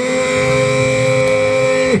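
A man's voice holding one long shouted note at a single steady pitch for about two seconds. It swings up into the note at the start and drops away at the end: a volleyball commentator drawing out a syllable.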